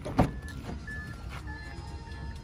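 A car door's latch clicking open with a sharp knock just after the start. This is followed by short, evenly spaced high beeps of one pitch, a little under two a second, with music.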